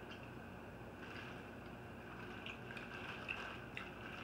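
Faint chewing of cheese curds and a few small rustles and clicks from handling their plastic bag, over a steady low room hum.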